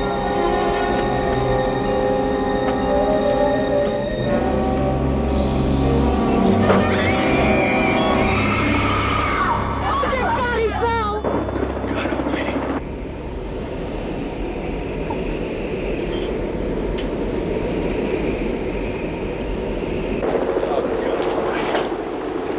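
Tense orchestral suspense music with held chords and, near the middle, wavering high lines. About halfway through, the music gives way to a steady rushing roar of wind and engine noise.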